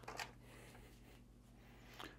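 Near silence: room tone with a low steady hum, and one faint short handling sound just after the start.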